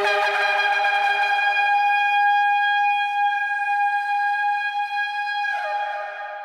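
Shofar (ram's horn) blowing one long, held note that sags in pitch and fades away near the end.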